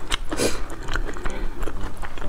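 Close-miked chewing, a run of wet smacks and sharp clicks from the mouth, with a fuller squelch about half a second in.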